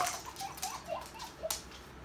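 A dog and a kitten at play on a wooden floor: a quick run of short, high squeaks, about eight in a second and a half, with a couple of sharp clicks of claws on the hardwood.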